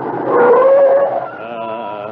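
A dog-like howl on an old radio recording: one drawn-out, slightly rising call, then a wavering, thinner call near the end.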